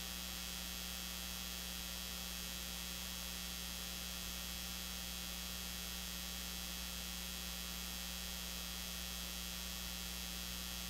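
Steady electrical mains hum with hiss on the audio feed, unchanging throughout; no music or voices come through.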